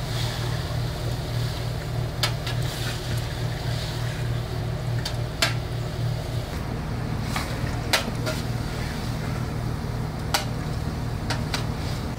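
Outdoor gas burner under a large aluminium stock pot, burning with a steady low rumble. A long metal spoon stirs the pot and knocks or scrapes against it a few times.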